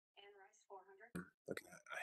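A faint, muffled voice mumbling in short bits over a video-call line, with a short click about a second in.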